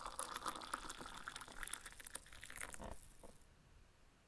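Liquid pouring into a cup, a splashy trickle with small clicks that tails off about three seconds in.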